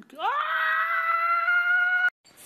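A long, loud scream that rises in pitch over the first half-second, then holds one high note until it cuts off suddenly.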